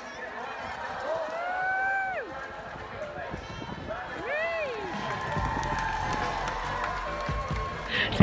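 Two long voice calls, each rising and then falling in pitch, about a second in and again about four seconds in, over loudspeaker music and open-air crowd noise.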